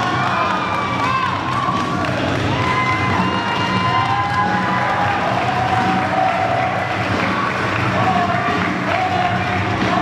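Wrestling crowd cheering and shouting, many voices calling out at once, several of them holding long calls.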